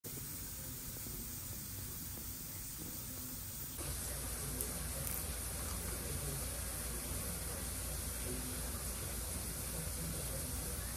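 Steady background hiss with no distinct sound event, stepping up slightly in level about four seconds in.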